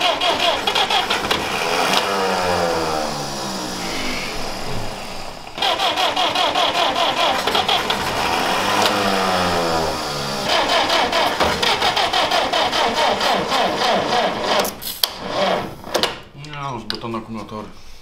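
Electric starter on 24 volts cranking the 1940 GAZ-M1's four-cylinder side-valve engine in three long runs that end about fifteen seconds in, without the engine catching. The crew puts it down to run-down batteries, and suspects the Bendix starter pinion may be throwing out.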